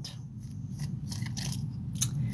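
Quiet room tone: a low steady hum with a few faint clicks.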